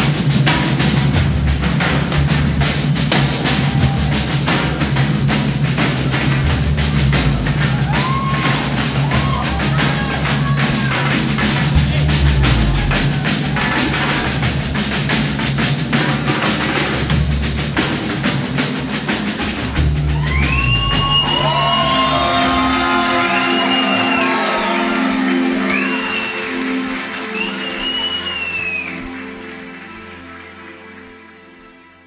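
Live band with a Brazilian percussion group playing a fast batucada on snare and repique drums over bass and keyboards. About two-thirds of the way through the drumming stops, leaving held keyboard chords under high sliding vocal calls, and the music fades out near the end.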